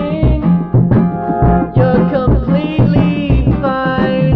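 Rock band demo recording: a voice singing over a full band of electric guitar, bass and drums, with a steady kick-drum beat.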